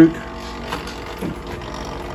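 Foam tabletop egg incubator's fan motor running with a steady mechanical whirr; the fans are a little rusty.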